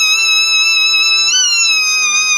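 Shehnai holding one long, reedy note that bends up briefly a little over a second in and then settles, over a steady harmonium drone.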